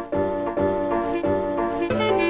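Background music: chords struck again and again in a steady rhythm, about twice a second.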